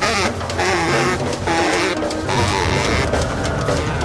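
Free-jazz group playing live: baritone saxophone over double bass and drum kit, with frequent drum and cymbal hits.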